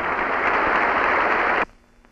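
A large hall audience applauding, a dense, steady clatter of clapping that cuts off abruptly about one and a half seconds in. The sound is dull, with little treble, as on an old newsreel soundtrack.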